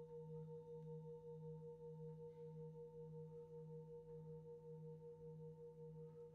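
Large singing bowl ringing on faintly: several steady tones held together with a gentle wavering pulse a few times a second, slowly fading, with no new strike.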